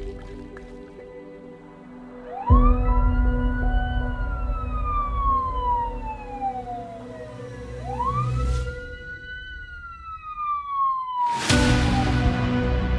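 Wailing siren going through two slow cycles, each rising quickly and then falling gradually, over background music. A rushing swell rises near the end.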